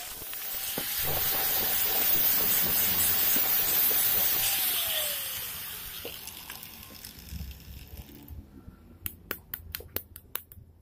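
Angle grinder spinning free off the work with a steady whine and a loud hiss from the disc, then switched off: the whine falls in pitch about five seconds in and the sound dies away over the next few seconds. A few sharp clicks follow near the end.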